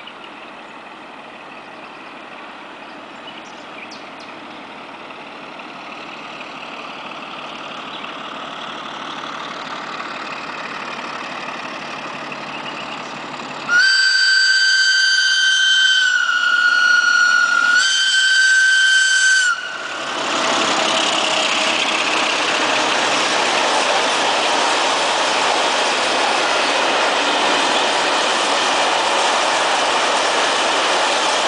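Romanian class 60 (LDE 2100) Sulzer diesel-electric locomotive approaching, its engine growing steadily louder. About halfway through it sounds its original high-pitched Sulzer whistle in one long blast of about six seconds, which dips slightly in pitch in the middle. Then the train rolls past close by with loud, steady wagon noise.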